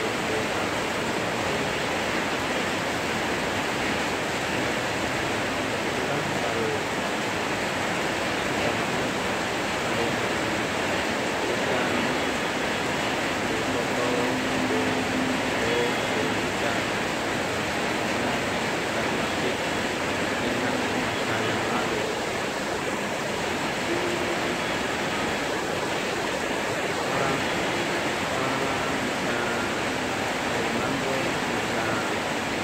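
Heavy rain falling hard and steadily on corrugated metal rooftops, an even, unbroken hiss.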